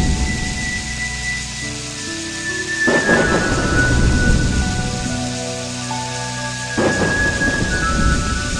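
Slow ambient closing music of long held notes over a steady hiss, with two loud swells that fill out the sound, one about three seconds in and one near the end.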